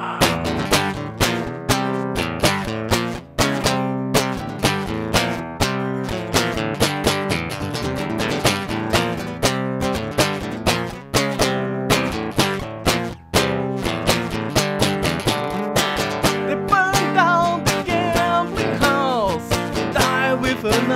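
Acoustic guitar playing an instrumental break: rapid, rhythmic strummed and picked chords with sharp, percussive attacks. Near the end a sliding melodic line rises above the chords.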